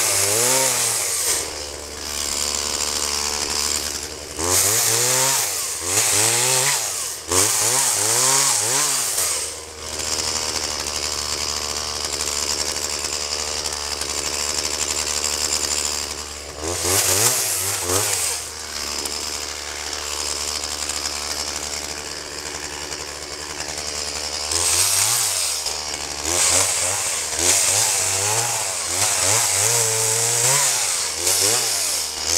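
Two-stroke gasoline chainsaw revved up and down in repeated bursts as it cuts through brush and a log, dropping back to a lower, steady run between the cuts.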